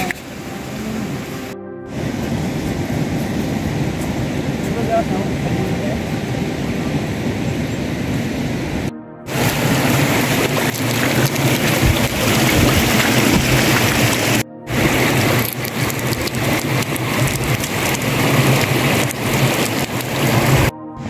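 Steady rain falling, with rainwater running over a stony path, heavier in the second half and broken by three brief silent gaps.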